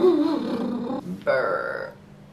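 A woman's low vocal shivering sounds of feeling cold: a wavering, throaty sound for about a second, then after a short break a briefer steady voiced note.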